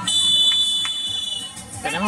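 Referee's whistle blown in one long, steady, high blast of about a second and a half, signalling the kick-off of the second half.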